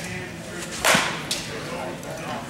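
A baseball bat striking a ball hit off a batting tee: one sharp, loud crack of contact about a second in, followed by a smaller click about half a second later.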